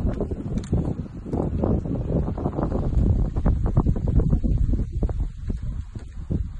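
Wind buffeting the microphone: a loud, gusty low rumble that surges unevenly.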